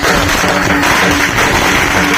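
Loud procession music with drumming, mixed with a dense, steady crackle of firecrackers going off.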